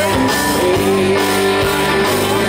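Live country band music with strummed acoustic guitar, playing steadily.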